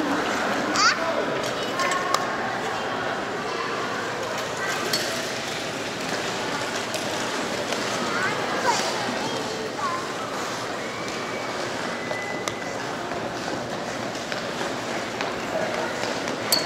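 Ice rink ambience: a steady background hubbub of indistinct voices, with a few light knocks and clinks scattered through.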